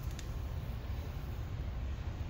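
Steady low background rumble of room noise, with a couple of faint clicks near the start.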